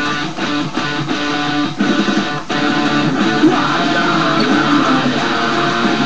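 Electric guitar playing a metal riff, with brief stops in the first few seconds, the clearest about two and a half seconds in.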